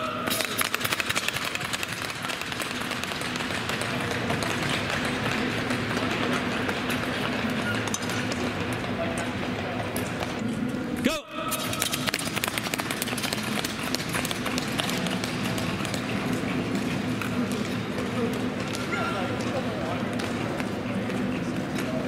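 Speed-skate blades striking and scraping the ice in quick running strides during standing starts, over indoor rink noise with voices in the background. The sound breaks off briefly about eleven seconds in, and a second run of strides follows.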